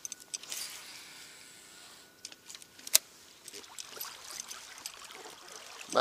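Faint trickling water with scattered small clicks and knocks, and one sharp click about three seconds in.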